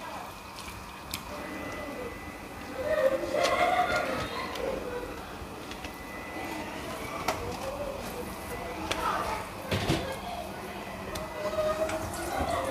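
Indistinct voices talking in the background, loudest about three to four seconds in, with a few sharp clicks scattered through.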